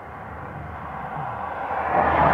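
A vehicle approaching, its steady rushing noise growing louder throughout.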